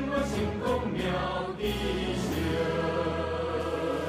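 Background music with a choir singing sustained notes.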